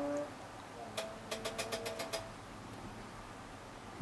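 A rapid run of about six or seven sharp clicks, with faint tones alongside, from an AttiCat insulation blowing machine as its remote start button is pressed, while the blower motor does not start. The crew put this down to weak batteries in the remote. A steady tone cuts off just after the start.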